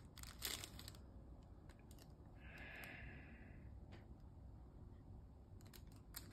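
Faint crinkling of the Paqui One Chip foil pouch as the chip is drawn out, over the first second. Then near silence, with a brief soft hiss a little before the middle.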